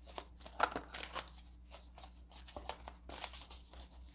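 Faint, irregular rustling and light scratching of oracle cards being handled as one more card is drawn from the deck.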